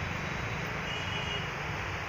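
Steady low background noise, with a faint thin high tone for about half a second near the middle.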